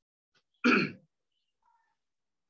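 A person clearing their throat once, a short burst a little over half a second in.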